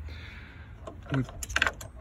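A brief light rattle of small metallic clicks about one and a half seconds in, like keys or metal bits jangling as something is handled.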